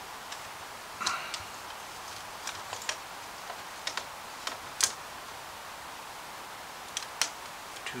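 Irregular light clicks and taps of plastic model parts being handled and pressed together as a door trim panel is worked onto a DeLorean scale model's door, the sharpest click about five seconds in.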